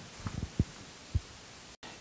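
A few soft, low thumps over quiet room tone, with a brief cut-out of the sound just before the end.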